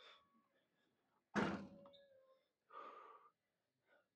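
A single sudden clank of a gym machine's weights being set down, with a brief metallic ring as it fades. About a second and a half later comes a heavy breath out.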